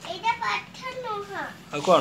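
A young child's voice speaking in short, high-pitched phrases that rise and fall.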